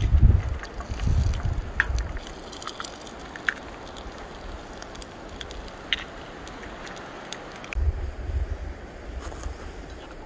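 Eggs frying in bacon grease in a lightweight backpacking frypan, with scattered small crackles and pops and a few sharper ticks. Wind gusts rumble on the microphone at the start and again near the end.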